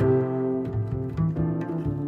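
Jazz duet of piano and plucked double bass: piano chords ring on while the bass moves through a few low notes.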